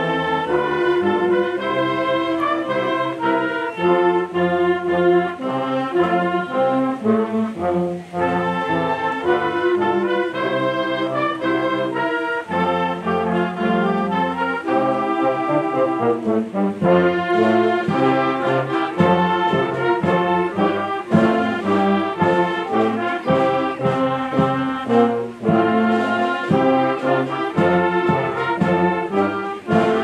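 A youth wind band plays a classical arrangement, with trumpets, trombones, saxophones, clarinets and flutes together. The music runs continuously, with brief breaks between phrases about 8 and 16 seconds in.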